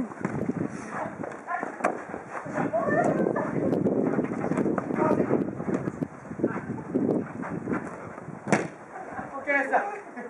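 Futsal players calling out over the play, with sharp kicks of the ball on artificial turf; the loudest kick comes near the end.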